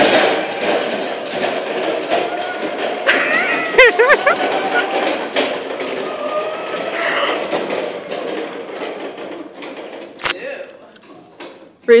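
Indistinct voices and laughter while a Clark electric stand-up reach truck is driven around, with a single sharp knock about ten seconds in.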